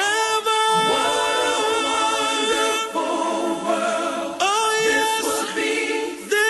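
Several voices singing without a drum beat, choir-style, in a house music mix: a long held chord for about three seconds, then a shorter sung phrase near the end.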